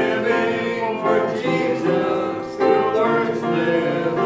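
A group of voices singing a hymn together, accompanied by a grand piano.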